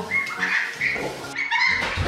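Month-old goslings peeping: a run of short, high whistled calls, with a longer falling call near the end.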